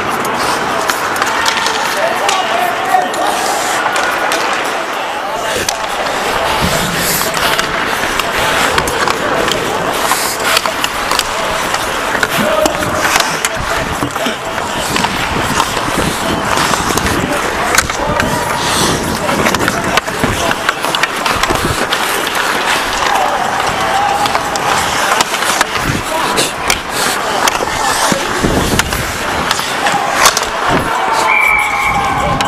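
Ice hockey skates scraping and carving on the ice, with many sharp clacks of sticks on the puck and on each other, heard up close from among the players.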